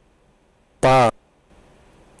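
A single synthesized speech syllable, a stop consonant followed by the vowel 'a', played back about a second in and lasting about a third of a second, its pitch falling slightly. It is a voice-onset-time test stimulus with 20 ms between the release of closure and the start of voicing. That puts it on the short side of the roughly 30 ms category boundary between ba and pa.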